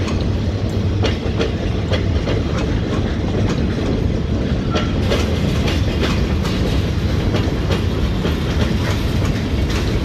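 Freight train of empty log flatcars and covered hoppers rolling past at a grade crossing: a steady rumble with repeated clicks of wheels over the rail joints.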